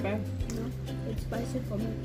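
Background music with held bass notes and a voice over it.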